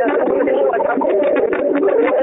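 Voices talking over a conference phone line: thin and muffled, with the words unclear.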